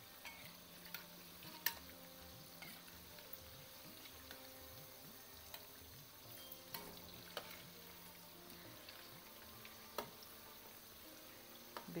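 Vegetable pakoras deep-frying in hot oil in a metal karai, a faint steady sizzle, with a few light clicks of a metal slotted spoon against the pan as the fritters are turned over one at a time.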